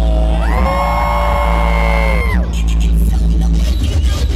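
Live hip-hop music over a concert sound system: a steady heavy bass, with a held note that slides up about half a second in, holds, and drops away about two and a half seconds in.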